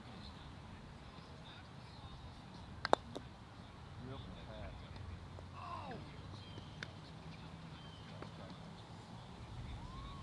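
A croquet ball being hit: one sharp click about three seconds in, with a fainter click near seven seconds, against steady faint outdoor background noise.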